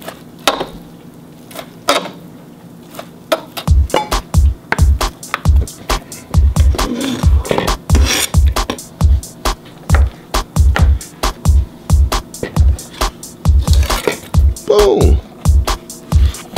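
A kitchen knife chopping cooked chicken breast on a plastic cutting board, in sharp separate knocks. About four seconds in, background music with a heavy steady bass beat comes in and plays over the chopping.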